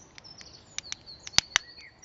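Sharp clicks of a small knife blade prying at the seam of a DJI Spark battery's plastic case, the loudest two close together about a second and a half in. Birds chirp with thin high whistles in the background.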